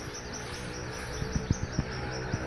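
Outdoor ambience: insects chirping in a fast, even pulse, with a few soft knocks partway through.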